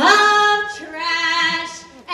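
A girl singing into a microphone, two held notes with a short break between them.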